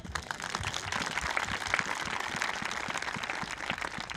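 A crowd applauding: many hands clapping together in a steady, dense spread of claps.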